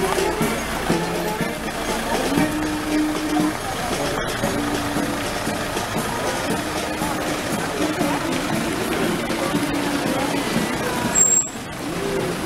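Music with a series of long held notes, heard along with a van driving past on the road.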